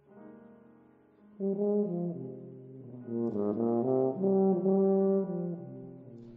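Yamaha YFB821S bass tuba playing a contemporary concert piece. It opens with a soft low note, comes in loud about a second and a half in with held notes, moves through a quicker run of notes in the middle, then holds a long note that dies away near the end.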